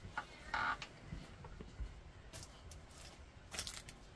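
Faint handling noise from a rifle being lifted and brought up to the shoulder to sight through its scope: a few scattered soft rustles and light clicks.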